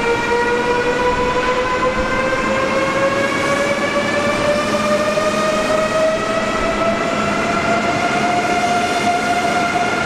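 Siemens Velaro D ICE 3 (DB Class 407) electric high-speed train pulling away from the platform. Its traction converters and motors give a whine of several tones that climbs slowly and steadily in pitch as the train gathers speed, over the rolling rumble of the cars.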